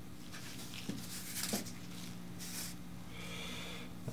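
Faint scraping and rubbing of a dye applicator working red dye wax in a paper bowl and on leather. There are two light clicks early on, a few short soft rubbing sounds later, and a low steady hum under it all.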